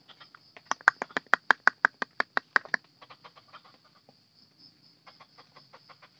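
An animal calling in a rapid run of sharp, evenly spaced notes, about six a second for two seconds, then fainter runs of calls, over a steady high-pitched whine.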